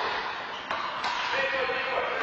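Handball rally: the rubber ball is struck twice, two sharp smacks about a third of a second apart, over a steady background hiss.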